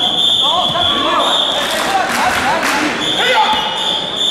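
Voices shouting and sudden thuds of a taekwondo bout in a hall. A steady high-pitched tone sounds for about a second and a half at the start and comes back for the last second.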